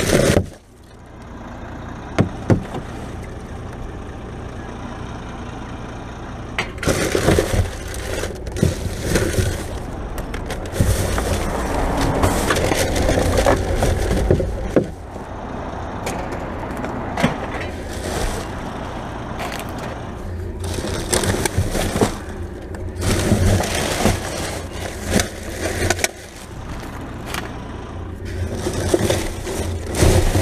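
Rubbish being rummaged through by hand: plastic bags and wrappers rustling and crackling, with scattered knocks and scrapes. It starts about seven seconds in, over a steady low hum.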